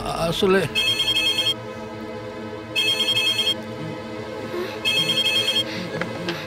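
Telephone ringing with an electronic trilling ring: three rings, each under a second, about two seconds apart.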